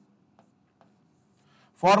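Near silence with two faint short taps of a stylus writing on a digital board, followed near the end by a man's voice starting to speak.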